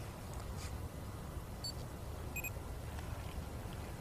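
Handheld laser speed gun giving two short electronic beeps as it takes a reading on a stationary car. The first comes about a second and a half in, and the second, lower in pitch, follows under a second later, over a steady low background hiss.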